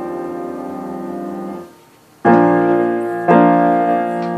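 Grand piano played by hand: a sustained chord rings on and is cut off about a second and a half in. After a short pause, two loud chords are struck about a second apart and left ringing, fading slowly.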